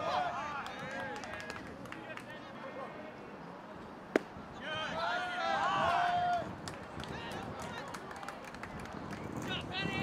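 A pitched baseball smacks into the catcher's mitt with one sharp crack about four seconds in, followed by about two seconds of shouting voices. Briefer shouts come at the start and near the end.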